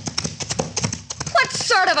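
Radio-drama sound-effect hoofbeats of a horse galloping away, a rapid run of clip-clops that fades out about a second in.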